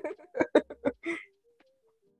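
A person laughing in a quick run of short, breathy bursts, lasting about a second.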